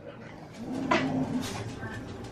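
A dog giving a short, low warning growl during a brief squabble with another dog, with a sharp click about a second in; a scuffle that sounds worse than it is.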